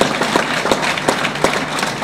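Audience applauding, the clapping easing off slightly.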